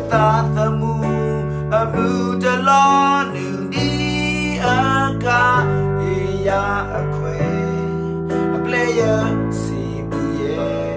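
A man singing a worship song, his held notes wavering, over a steady instrumental accompaniment whose chords and bass notes change every second or so.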